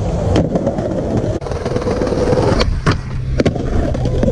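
Skateboard wheels rolling over stone pavement, with sharp clacks of the board popping and landing: one early, then several in quick succession over the last second and a half.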